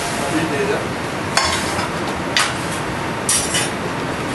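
A steel frying pan knocking twice against the gas range's grate, then a brief hiss as pasta cooking water goes into the hot pan, over steady kitchen background noise.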